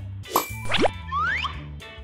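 Three quick comic rising-pitch sound effects, like cartoon boings, over children's background music.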